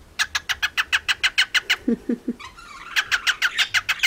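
Pet cockatiel chattering: a rapid run of short, sharp chirps, about eight a second. The run breaks off briefly around the middle and starts again.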